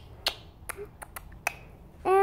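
Beatboxing: a run of about six sharp mouth clicks and pops at uneven spacing, with a short low hum near the middle.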